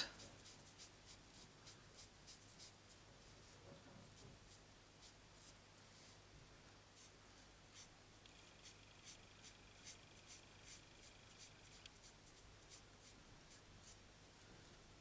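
Faint scratching of a felt-tip marker's brush nib on cardstock, in quick short flicking strokes about three a second, as grey shading is laid down.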